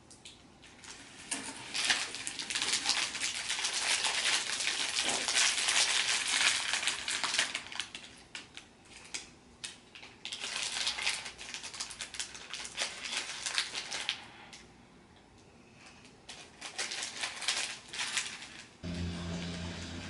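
Plastic candy bags and cellophane wrap crinkling and rustling as hands dig through them, with many small clicks and taps; it eases off for a couple of seconds about two-thirds through, then resumes.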